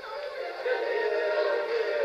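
Music with long held notes, thin and tinny with no bass.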